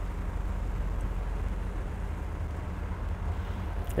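Low, steady rumble of car engines and running gear from cars moving slowly through tight turns.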